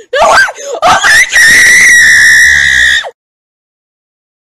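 A person screaming at full volume, the sound clipped and distorted: a few rising shrieks, then one long high-pitched scream held for about two seconds that cuts off suddenly about three seconds in.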